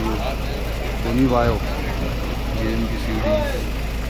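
Busy street-market ambience: scattered voices of people talking nearby over a steady low rumble of traffic.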